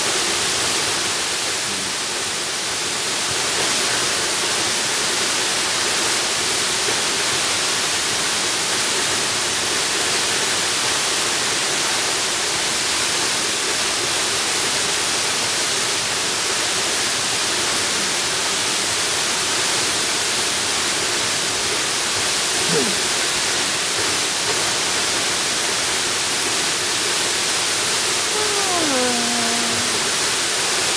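Waterfall: a steady, even rush of falling water that holds unchanged throughout.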